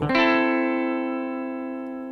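Ibanez electric guitar with a clean tone, a three-note chord at the fifth fret on the top three strings struck once and left ringing, slowly fading.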